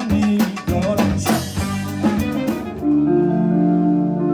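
A live band playing an instrumental passage: drum kit and hand percussion beating a rhythm under guitar and bass. A little after two seconds the beat stops, and about three seconds in sustained held notes from wind instruments, saxophone among them, come in.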